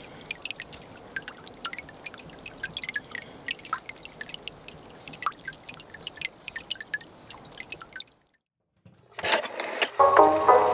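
Water drops dripping into shallow creek water: irregular small plinks, several a second, some with a short falling pitch. About eight seconds in the sound cuts out to silence, and near the end there is a loud burst of noise.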